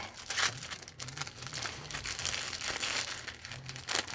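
Package of thin plastic treat bags crinkling as it is handled, a continuous crackle.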